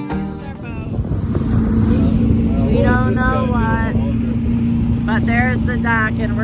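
Small boat's motor running at a steady pitch while under way, with indistinct voices over it.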